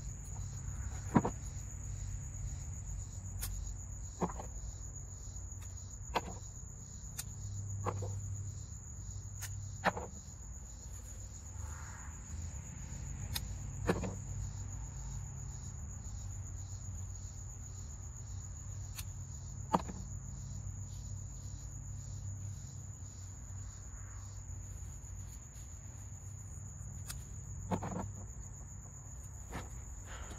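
A steady high chirring of summer insects fills the garden, with sharp single clicks every few seconds from hand pruning shears snipping pepper stems.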